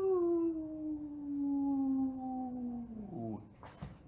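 A man's voice holding one long vocal note that slides slowly down in pitch, then drops away sharply about three seconds in. A short knock follows near the end.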